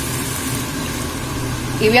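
Tomato sauce sizzling steadily in a hot pan on full heat while white wine is poured in, over a steady low hum.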